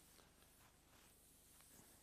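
Near silence with the faint rubbing of a chalkboard eraser wiped across the board in strokes.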